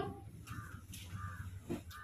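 Two faint, short bird calls about half a second apart, over low room noise, with a light click near the end.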